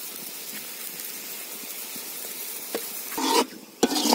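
Masala gravy sizzling steadily in a large metal pot, then in the last second or so a metal ladle scrapes and knocks against the pot as stirring starts.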